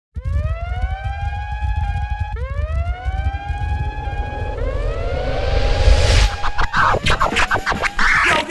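Intro sound design: three rising siren-like tones, each about two seconds long, over a heavy bass rumble. They swell into a whooshing rise, then break into a run of quick percussive hits near the end.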